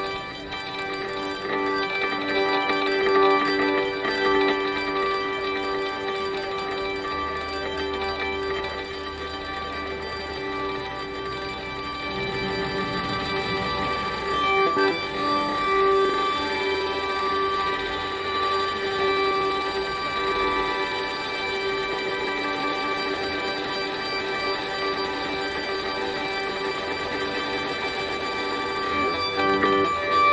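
Frequency Factory Dreamcatcher prototype granular synthesizer playing a sustained pad of many steady, layered tones, granulated from a four-second guitar-harmonics sample and run through its comb filter.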